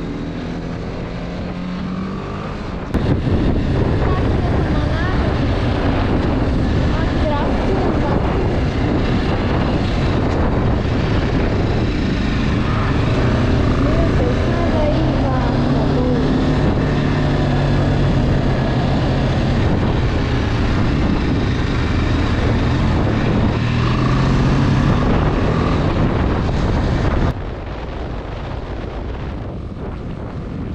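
Motorcycle engine running at road speed with wind buffeting the microphone. The sound jumps louder about three seconds in and drops back suddenly a few seconds before the end.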